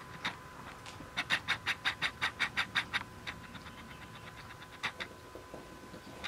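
A cat's paws and claws pattering and scratching on a rug as it whirls after its own tail: a quick run of light ticks, about six a second, for about two seconds, then a few scattered ones.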